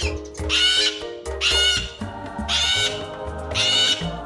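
Parrot squawking four times, about once a second, each call loud and wavering, over steady background music with a low bass line.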